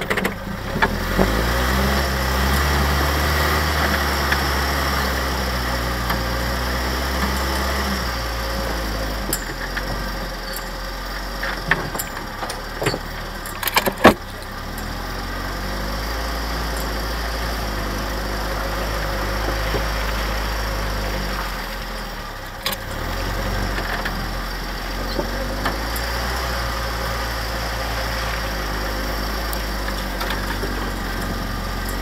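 Willys flat-fender jeep's four-cylinder engine running under load as the jeep drives, its pitch rising and falling with throttle. A few sharp knocks come near the middle, one of them loud.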